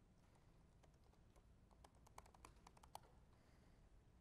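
Faint typing on a computer keyboard: a few scattered keystrokes, then a quick run of them in the second half.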